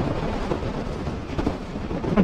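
Steady rush of wind and road noise from a motor scooter cruising at highway speed, with no distinct engine note standing out.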